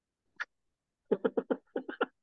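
A man laughing in quick, short chuckles that start about a second in, after a near-silent first second.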